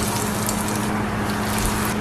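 A breadcrumb-coated green jackfruit cutlet deep-frying in hot oil in a small saucepan: a steady sizzle with fine crackling as the oil bubbles hard around the newly added cutlet.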